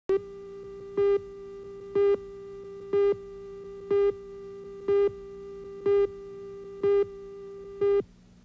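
Videotape leader countdown: a steady buzzy tone with a much louder beep once a second, nine beeps marking the count from 10 down to 2. Tone and beeps stop together after the last beep.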